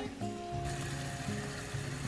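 Background music with steady, held notes.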